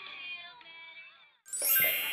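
Children's cartoon soundtrack playing through a small phone speaker: music with sliding, pitched voice sounds, fading out about a second and a half in. Brighter, crisper background music then starts suddenly.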